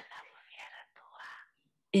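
Faint, breathy, whisper-like voice sounds without clear pitch, in a pause between spoken phrases. Clear speech resumes at the very end.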